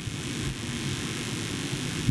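Steady low rumble with a faint hiss and no speech: background room noise in a pause of the talk.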